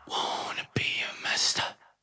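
A person whispering quietly: a couple of short breathy phrases with no clear pitch, after the music has stopped.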